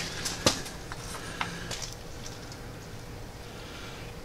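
A few light clicks of small metal parts being handled at the engine-to-pump coupler, the sharpest about half a second in, over a low steady hum.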